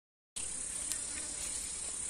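Steady, high-pitched drone of an insect chorus in vegetation, starting about a third of a second in.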